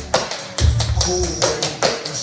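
Tap shoes clicking on a wooden floor during tap dancing, over a chopped-and-slowed hip-hop track with deep bass.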